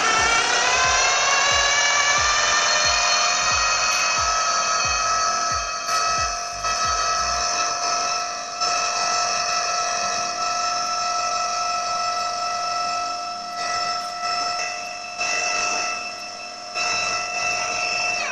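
Food processor motor whining up to speed and then running steadily as its blade chops tomato, red onion, avocado and coriander into a chunky guacamole. Low uneven knocking from the chunks against the blade dies away after about seven seconds, and the motor stops near the end.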